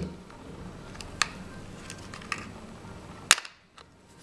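Plastic clip-on mount of a Contour HD camera being pulled off the camera body's rail after its locking tab is lifted. Faint handling with two small clicks, then a sharp snap near the end as the mount comes free.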